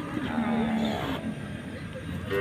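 A cow giving one low moo, about a second long, near the start.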